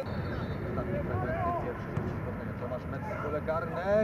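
Men's voices calling out over a steady low rumble of open-air background noise at a football ground.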